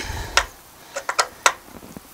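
A handful of sharp, irregularly spaced metallic clicks from hand tools working a bolt on an aluminium ladder-leveler bracket, as it is tightened down toward its 9 foot-pound torque.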